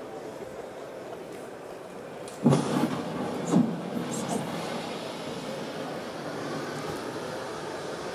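Underwater explosion played over a hall's loudspeakers: a sudden blast about two and a half seconds in, a second jolt a second later, then a steady rushing rumble.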